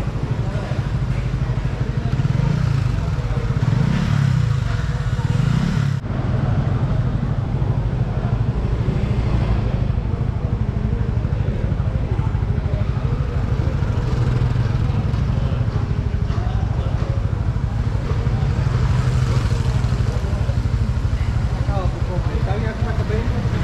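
Busy street noise: motorcycle and scooter engines passing, with people talking.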